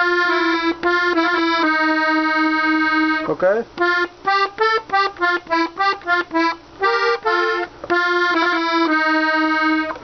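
A Hohner Corona II Classic three-row diatonic button accordion in G plays a slow melody on the treble buttons alone, with no bass. Held notes give way in the middle to a run of short separate notes, about four a second, then to long held notes again.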